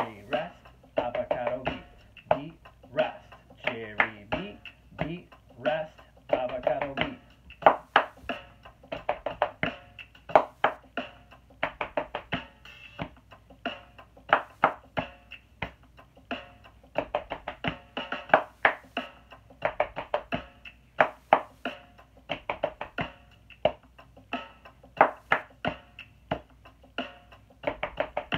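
Hand claps and body-percussion pats played in a steady repeating rhythm along with a hip hop beat. A voice chants the rhythm words over the first several seconds.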